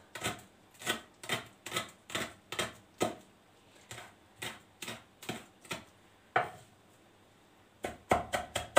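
Kitchen knife chopping fresh greens on a wooden cutting board: a run of irregular knocks, about two a second, that stops about six and a half seconds in.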